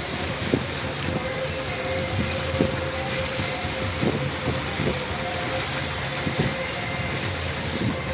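Motorboat running steadily over light chop, its engine a steady drone under wind rushing on the microphone, with short irregular thumps every second or two.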